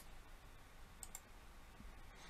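Near silence with a few faint, short clicks, two of them close together about a second in.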